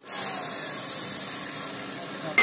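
Steady hissing background noise of a construction site, fading slightly, with faint machinery running under it.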